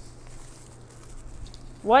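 Quiet room tone with a faint, steady low hum, then a voice begins near the end.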